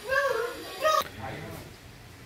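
A young child's voice: two short high-pitched cries, the second just before a second in, rising in pitch.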